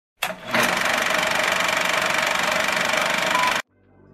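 A loud, fast, even mechanical rattle over a dense hiss, with a steady tone running through it. It opens with a short burst and cuts off suddenly shortly before the end.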